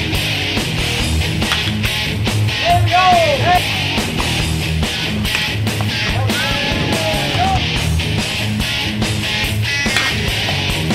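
Loud rock music backing track with electric guitar and a steady drum beat.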